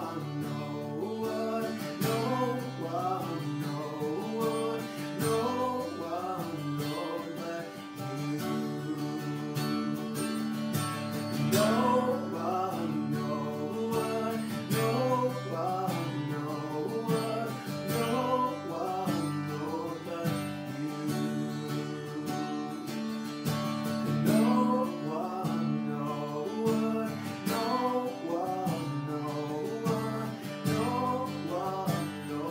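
Acoustic guitar strummed steadily, with a man singing along.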